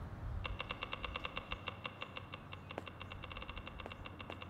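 Rapid, even clicking of a small clockwork mechanism, starting about half a second in.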